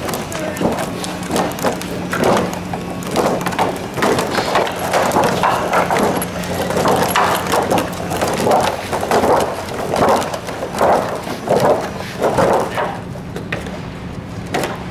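Irregular clattering knocks and thuds from a large crane rod puppet's wings and control rods being flapped and jabbed by puppeteers, over a steady low hum.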